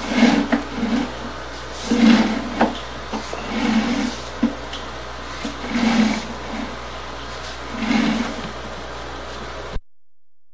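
Sewer inspection camera's push cable being pulled back through a drain line in strokes: a low rumbling scrape about every two seconds. The sound cuts off abruptly near the end.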